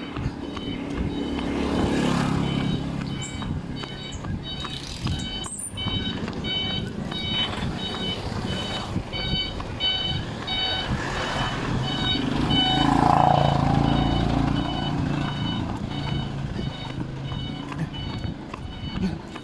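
A motor vehicle engine running, swelling louder about two seconds in and again near the middle, with a rapid repeating run of short high-pitched electronic beeps at a few different pitches.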